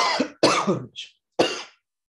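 A woman coughing: a short fit of three coughs over about a second and a half, the first the loudest.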